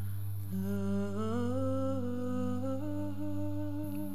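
A woman humming a slow tune without words, held notes stepping gradually upward, over a steady low background hum.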